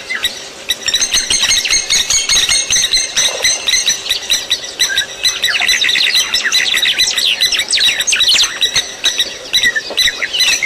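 A flock of small birds chirping together in a dense, continuous chorus of short, high, falling calls, swelling to full strength about a second in.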